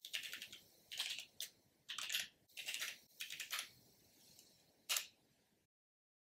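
Typing on a computer keyboard: faint, short flurries of keystrokes, ending with a single keystroke about five seconds in.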